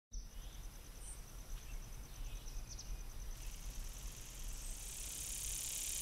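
Faint woodland ambience: an insect trilling in a steady high pulse, a few short bird chirps in the first three seconds, and a low rumble, with a hiss that swells toward the end.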